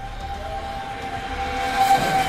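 A long, steady horn tone, with a second lower tone joining about half a second in, over a low street rumble.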